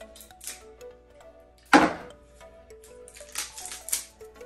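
A new whisky bottle being opened by hand: small clicks and crackles as the seal and stopper are worked, with one short, loud sound just before the middle. Background music plays throughout.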